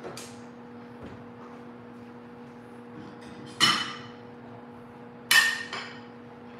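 Two sharp metallic clanks with a short ring, about a second and a half apart, from metal kitchenware such as a pan and spatula being knocked or set down, over a steady low hum.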